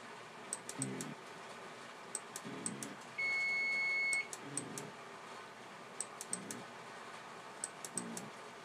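An electronic beep, one steady high tone lasting about a second, starts about three seconds in. Under it runs a faint repeating pattern of small high ticks and soft low muffled sounds, roughly every one and a half to two seconds.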